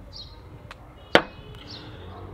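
Glassware being handled at a wooden table: a faint click and then one sharp click about a second in. Faint high bird chirps can be heard behind it.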